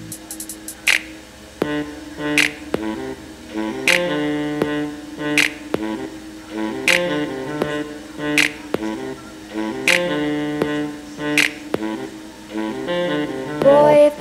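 Pop song's instrumental break played through a tiny M6 pocket mirror Bluetooth speaker: held chords with a sharp drum hit about every second and a half, and a thin low end.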